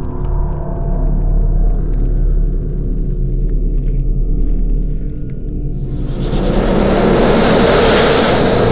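Dark ambient film soundtrack: a low, sustained synth drone, joined about six seconds in by a swelling rumble of noise that grows louder.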